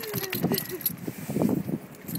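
A scattered run of small light clinks and jingling rattles, with voices in the background.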